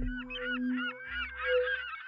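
Intro sound logo: a flurry of short bird-like cries over a steady low tone, thinning out near the end.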